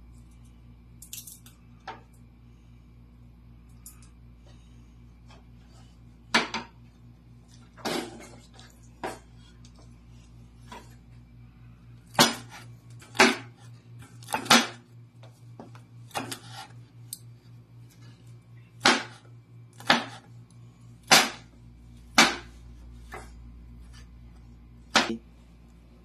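Cleaver chopping garlic on a wooden cutting board: a dozen or so sharp knocks of the blade on the board, spaced irregularly about a second apart, few at first and more from about halfway.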